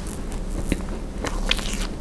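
Close-miked mouth chewing a small sweet, with several sharp crackling clicks as it is bitten down.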